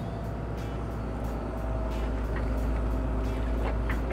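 Hitachi hydraulic excavator's diesel engine running under load as the boom is raised and the arm swung out: a steady low drone that grows slightly louder.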